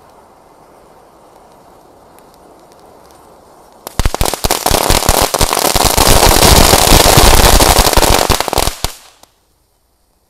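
A faint steady hiss, then about four seconds in a ground firework goes off with loud, dense, rapid crackling pops and a rushing spray of sparks, lasting about five seconds before it cuts off abruptly.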